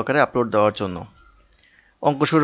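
A man's voice narrating in Bengali for about a second, then a short pause.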